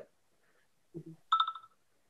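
A short electronic beep, a steady high tone pulsing a few times about a second and a half in, just after a faint low blip; the rest is dead silence.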